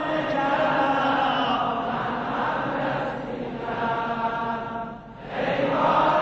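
Many men's voices chanting a Shia nohe lament together in long held sung phrases, with a brief break about five seconds in.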